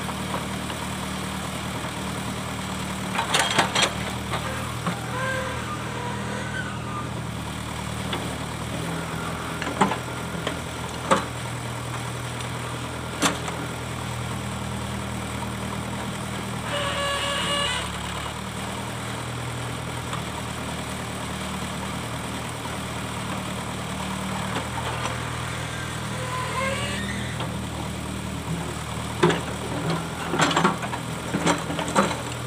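Backhoe loader's diesel engine running steadily as the rear arm and bucket work, with a few sharp metallic knocks and a brief whine a little past the middle.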